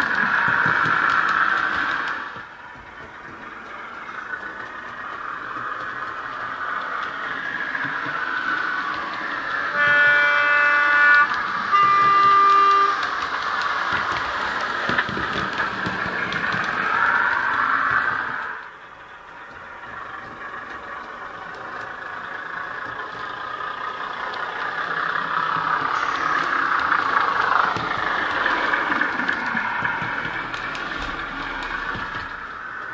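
Bachmann Class 101 diesel multiple unit model's DCC sound file, played through a small flat sugarcube speaker: the diesel engine sound running, growing louder and fading as the train passes by. Two horn notes, a higher then a lower, sound about ten to thirteen seconds in.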